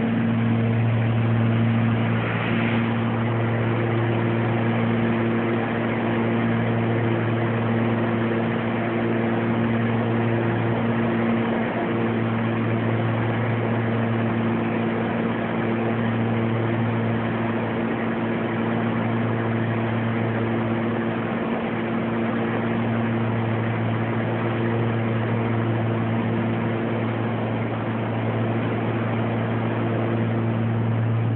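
Cabin drone of a Beechcraft Baron G58's twin six-cylinder piston engines and propellers running steadily in flight on approach: a strong low hum that wavers slowly, with higher steady tones and a noise haze above it.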